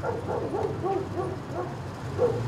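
A dog whining and yipping in a quick run of short, pitched cries that rise and fall, over a steady low hum.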